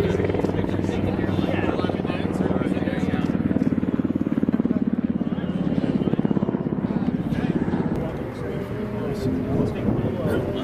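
A steady engine drone with a rapid, even pulse, easing about eight seconds in, with voices talking faintly over it.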